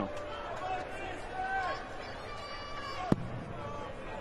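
Arena crowd murmuring with scattered calls and whistles. About three seconds in, a single sharp thud as a steel-tip dart strikes the dartboard.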